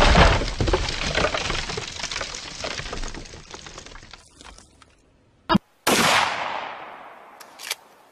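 A loud crash-like bang, begun just before, crackles and dies away over the first four seconds. After a brief silence come a short click and then a second sudden loud bang about six seconds in, fading over nearly two seconds.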